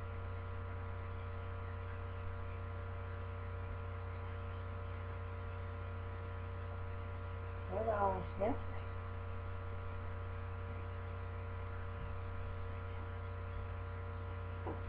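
Steady electrical hum with a set of constant tones layered over it, unchanging throughout.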